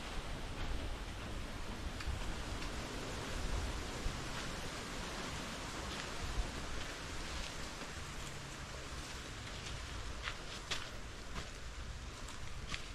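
Steady outdoor wind noise with rustling foliage, the low end buffeting the microphone, and a few faint clicks in the last couple of seconds.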